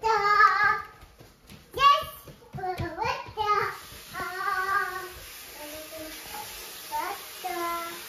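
A small child singing and calling out in a sing-song voice without clear words. From about halfway through, a tap runs water steadily into a basin.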